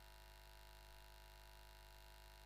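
Near silence with only a faint, steady electrical hum.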